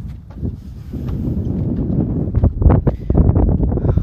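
Wind buffeting a phone's microphone in irregular gusts, a low rumble that swells about a second in and is loudest in the second half.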